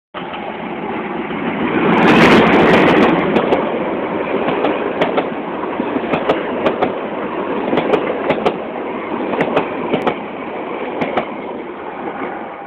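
A diesel-hauled passenger train passing close by: loud engine and rolling noise peaking about two to three seconds in as the locomotive goes past, then the coaches rumble by with a run of sharp clacks from the wheels crossing rail joints.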